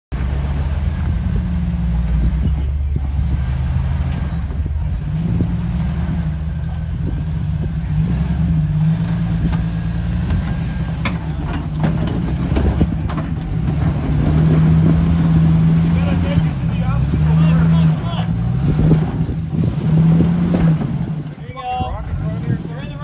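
Jeep Cherokee XJ engine running at crawling speed, its revs repeatedly rising and falling as it climbs over boulders, with a few sharp knocks mixed in.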